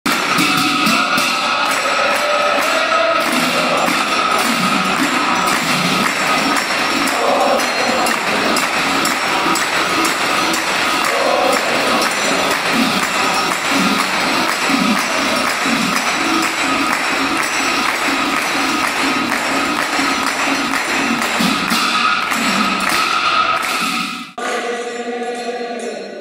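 Devotional group singing with rapidly struck hand cymbals, continuous and dense. It breaks off abruptly about two seconds before the end into a steadier sound.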